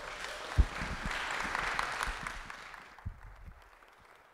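Audience applauding in welcome, dying away after about three seconds. A single low thump sounds about half a second in.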